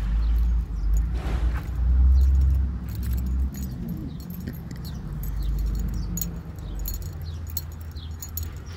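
Keys jingling lightly in small clicks as a person walks, over a low rumble of wind on the phone's microphone that is loudest about two to three seconds in.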